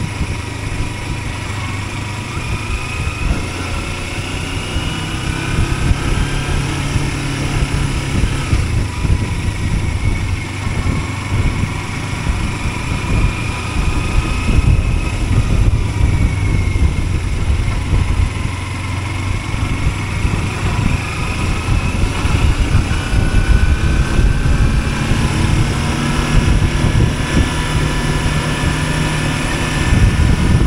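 Kawasaki Versys-X 300's parallel-twin engine running as the motorcycle is ridden along a road, its pitch slowly rising and falling with throttle and speed, over a dense rumble of wind noise.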